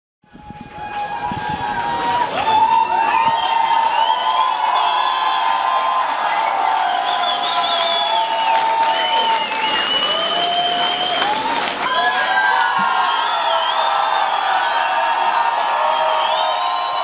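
A large concert audience cheering, screaming and applauding, many high voices wavering over one another. It fades in from silence over the first couple of seconds, then holds steady and loud.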